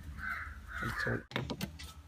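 A bird cawing twice in the first second or so: a short call, then a longer one.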